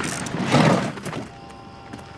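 Wheelbarrow wheel rolling and crunching over gravel for about a second, then a sustained note of background music takes over.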